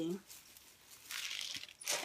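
Plastic crinkling as purchased items are handled, lasting about a second from around the middle, ending in a sharp click.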